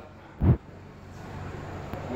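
Quiet room tone broken by one short, low thump about half a second in.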